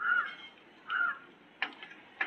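A bird calling twice, two short harsh calls about a second apart, followed by a few light clicks near the end.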